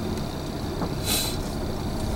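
Car cabin rumble of a car creeping slowly across a gravel parking lot, with a short hiss about a second in.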